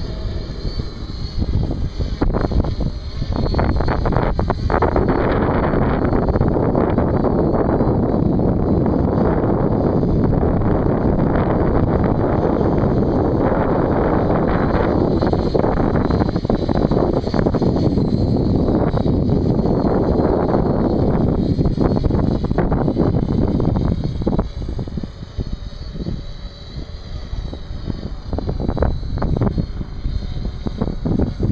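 Wind buffeting the microphone in loud, rough gusts that ease off for a few seconds near the end.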